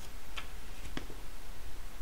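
Pages of a paperback picture book being handled and turned: three light ticks in the first second, over a steady low hum.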